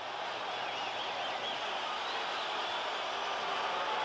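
Ballpark crowd noise: a steady din of many voices, with a faint wavering high-pitched call in the first couple of seconds.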